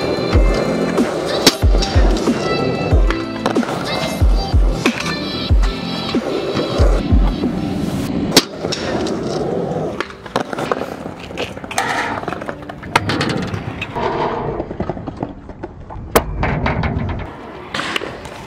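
A music track with a steady kick-drum beat, over the rolling of stunt-scooter wheels on concrete, with two sharp clacks of the scooter striking the ground, about eight and sixteen seconds in.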